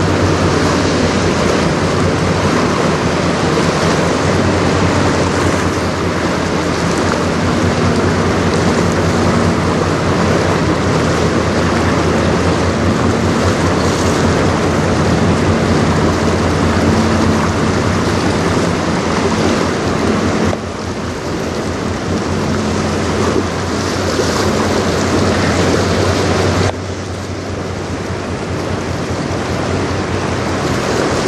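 Bulk carrier CSL Niagara passing close by: a steady low engine drone under a loud, even rush of wind and water. The overall level drops suddenly twice in the last third.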